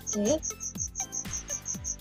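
Crickets chirping in a steady fast rhythm, about six short high chirps a second, over low falling thumps.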